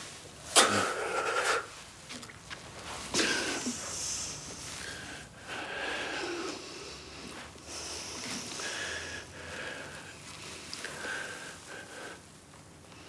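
A man sobbing without words: ragged, gasping breaths and sniffs, the loudest gasps under a second in and about three seconds in, then quieter broken crying.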